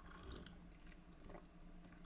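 Near silence with a few faint mouth clicks and swallowing sounds as a person sips a drink from a mug, the clearest about half a second in and again just past a second.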